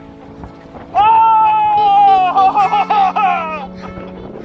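A person's long, excited cry of "oh!" starting about a second in, breaking into laughter.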